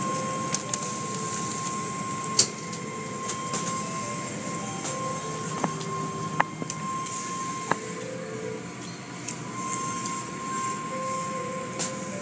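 Automatic car wash heard from inside the car: steady noise of water spray and wash machinery on the body, with a steady whine and a handful of sharp knocks as the equipment strikes the car.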